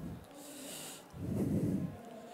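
A sniffing breath through the nose close to a cheek microphone, then a low muffled sound about a second and a half in.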